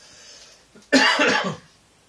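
A man coughs once, loudly, about a second in.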